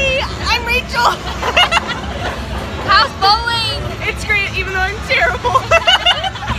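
Young women's excited, high-pitched voices and laughter over the steady crowd babble of a busy bowling alley.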